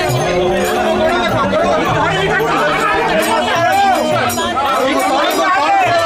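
A crowd of men's voices calling and chanting all at once, overlapping, with a few long held notes in the first half.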